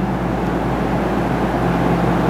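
Steady low hum with an even hiss over it, unchanging throughout: the background noise of the recording room.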